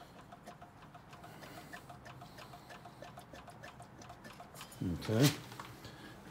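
Priming lever of a Gravely tractor engine's mechanical fuel pump worked by hand: a run of faint, regular clicks, priming fuel to the carburettor before a cold start.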